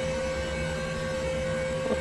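A steady droning noise under a constant hum, unchanging throughout.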